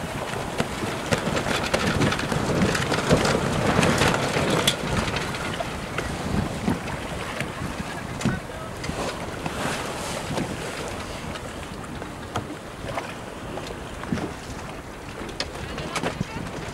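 Wind buffeting the microphone over the rush of choppy sea and a yacht's wake, loudest in the first few seconds and easing after.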